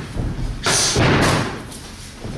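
Boxing-gloved punches landing on focus mitts: two solid hits in quick succession near the middle, with hall echo after them.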